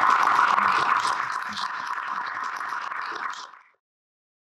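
Audience applauding, fading out about three and a half seconds in.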